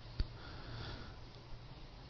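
A man's soft sniff through the nose, preceded by a single sharp click just after the start, over a faint low steady hum.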